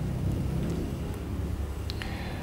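A low, steady background rumble with no distinct events.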